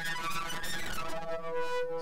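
A held note from Bitwig Studio's Polysynth software synthesizer. Its timbre slowly shifts as an ADSR modulator with a long attack sweeps the oscillator sync, sub level and filter resonance.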